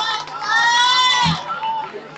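A person's high-pitched cheer, held for about a second, with a short low thump just after it.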